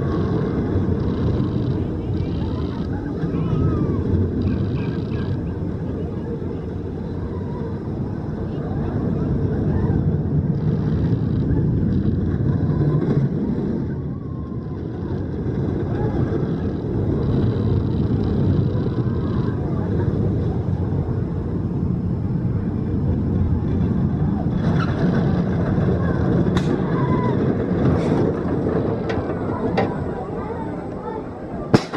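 Zierer steel roller coaster train rumbling along its track, with riders' voices mixed in. A few sharp clicks near the end as the train pulls into the station.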